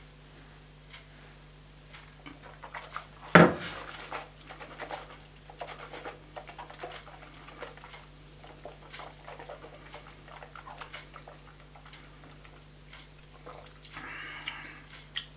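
A person holding a sip of watered-down cask-strength Islay whisky in the mouth, with faint wet mouth clicks and lip smacks scattered throughout. One loud short burst comes about three and a half seconds in.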